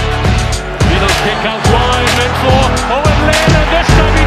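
Background music with a steady beat, a bass line and a gliding melodic line.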